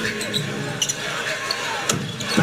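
A basketball being dribbled on a hardwood court, a few sharp bounces heard in the game broadcast's arena sound.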